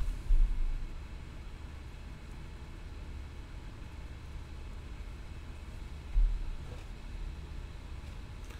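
Steady low hum of background noise, with two brief, dull low thumps: one just after the start and one about six seconds in.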